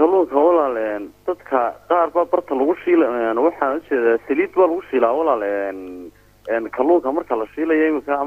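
Speech only: a person talking steadily, with a brief pause about six seconds in. The voice sounds narrow and telephone-like, cut off above the upper mids.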